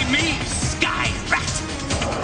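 Action-cartoon score with a creature's short high cries over it: a warbling cry at the start, then two sharp yelps about a second in and near the middle of the second second.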